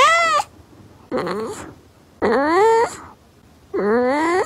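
Domestic cat meowing, a series of about four drawn-out meows roughly a second apart, several of them rising in pitch.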